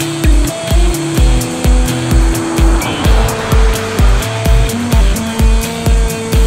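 Background music with a steady kick-drum beat about twice a second under long held melody notes.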